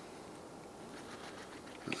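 Faint steady background noise with no distinct event; a man's voice begins a word right at the end.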